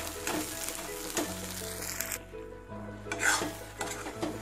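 A ladle stirring and scraping thick mint paste as it fries in oil in an aluminium kadai, in repeated short strokes, with a soft sizzle underneath. The paste is being sautéed until the oil separates out.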